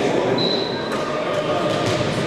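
Echoing sports-hall sound of volleyball players talking and calling out between rallies, with a few thumps of a volleyball bouncing on the court floor.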